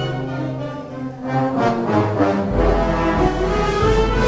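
A Spanish wind band (banda de música) playing a Holy Week processional march, with the brass in front in sustained chords. The sound thins briefly about a second in, then swells back, and a deep bass comes in about halfway through.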